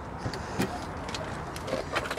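A few faint, light clicks and rustles over a low hiss: car keys being handled as a key is brought to the ignition.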